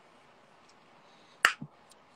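Near silence with faint background hiss, broken by one sharp click about one and a half seconds in, followed by a fainter tick.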